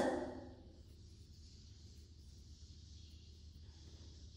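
Very quiet room tone: a faint steady low hum and hiss, with no distinct crochet or other sound standing out.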